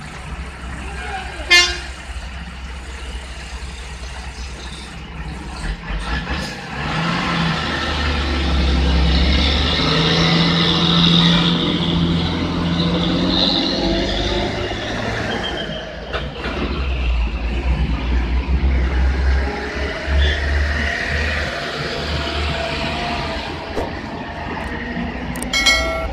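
Lorries and buses driving round a hairpin bend, their heavy diesel engines rumbling loudly as each passes. A short horn toot sounds about a second and a half in, and another near the end.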